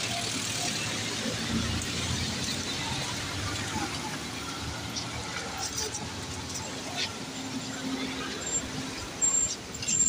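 Street traffic: car engines running as vehicles pass close by, a steady low hum and road noise, with people's voices faint in the background.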